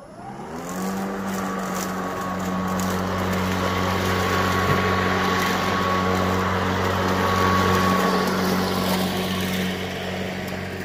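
Greenworks Pro 80V 21-inch battery-powered push mower starting up. Its motor and blade spin up with a rising whine over the first second, then run at a steady hum with a rush of air from the blade.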